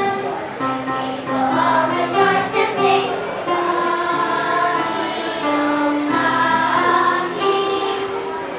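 Children's choir singing a Christmas song medley, holding notes that change every second or so.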